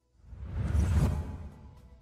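A whoosh transition sound effect from a news graphics stinger: a deep rumbling swell that rises about half a second in and dies away by the middle, leaving a faint held musical tone.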